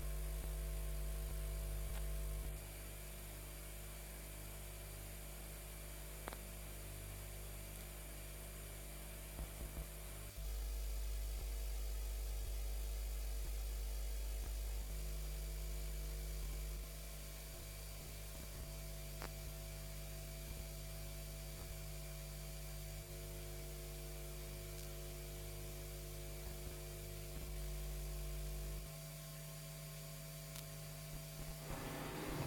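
Steady electrical mains hum with a faint buzz and hiss on an audio feed carrying no program. The low hum steps louder and softer several times, and there are a few faint clicks.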